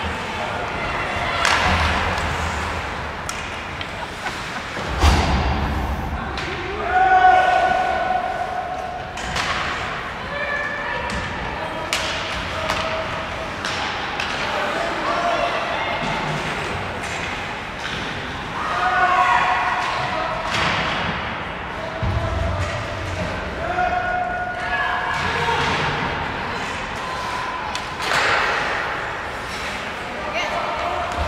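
Ice hockey play: repeated sharp thuds and slams of the puck and players hitting the boards and glass, mixed with short shouted calls from players and spectators. The hardest impact comes about five seconds in, followed by a loud shout.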